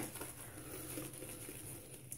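Boar bristle shaving brush being worked over a wet shaving soap, a faint, soft, even brushing as the brush is loaded.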